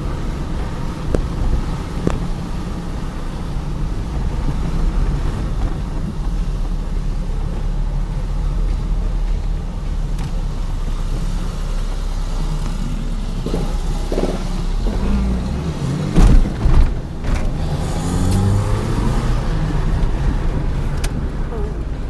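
Car engine and road noise heard from inside the cabin while driving slowly through town streets. About sixteen seconds in the low rumble drops away, a few loud knocks sound, and then the engine note rises as the car pulls away again.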